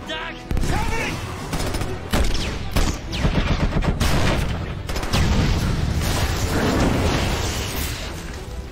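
Battle sound effects of sustained heavy gunfire, rapid shots running together, with several explosions mixed in.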